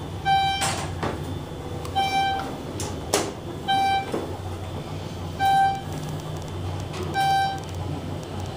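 An elevator beeper sounding a short pitched beep at even intervals, about every 1.7 seconds, over a steady low hum in the elevator cab. Two sharp clicks come about half a second in and about three seconds in.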